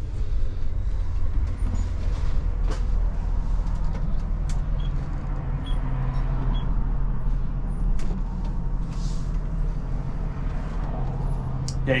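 Inside the cab of a diesel-pusher motorhome pulling out onto the road: its rear-mounted 325 hp Cummins 6.7-litre diesel drones low and steady, with scattered clicks and creaks from the body as the chassis twists.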